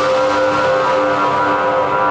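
Tail of an electronic logo jingle: a held, ringing chord of steady tones that slowly fades, its high end dying away first.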